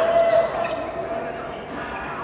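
Sports shoe squeaking on a badminton court mat during a doubles rally, one held squeak at the start that is the loudest sound, then a sharp racket strike on a shuttlecock about two-thirds of a second in, echoing in the hall.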